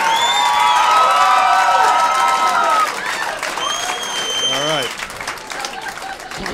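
Live comedy-club audience applauding and cheering after a punchline, with held whoops from several voices and a whistle about halfway through. It dies down over the second half.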